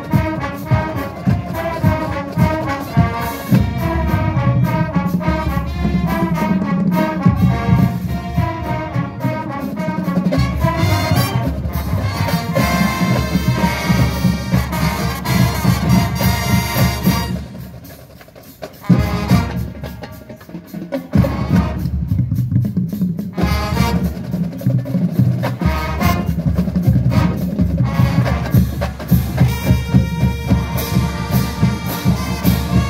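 A full marching band of brass, sousaphones and drums playing an upbeat tune, with regular drum strikes. About eighteen seconds in the band drops away to a quieter stretch with a few scattered hits for several seconds, then the full band comes back in.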